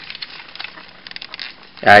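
Faint clicking and rustling of a plastic Transformers Movie Voyager Ratchet action figure being handled, its leg and hip parts moved about; a voice starts just before the end.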